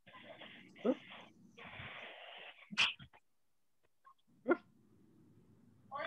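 A dog barking a few short times, heard through a video call's audio.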